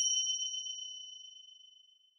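A bright, bell-like 'ding' sound effect ringing out with a clear high tone and fading away steadily, dying out near the end.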